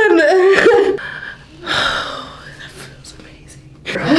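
A woman crying with relief, her pain gone after a neck adjustment: a wavering, tearful whimper for about a second, then a breathy gasp about two seconds in.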